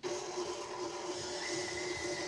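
KitchenAid stand mixer motor running steadily, its beater creaming butter and sugar in a glass bowl. It starts right at the beginning, and a thin higher whine joins about halfway through.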